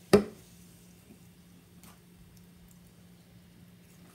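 An aluminium Sprite can set down on a table with one sharp knock just after the start, then faint small clicks over a steady low hum.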